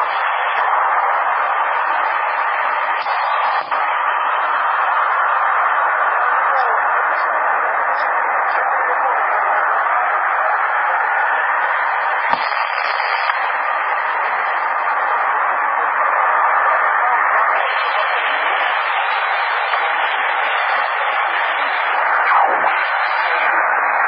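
CB radio receiver hissing steadily with static, no station readable through it. There is a single sharp click about twelve seconds in, and the hiss grows a little louder near the end.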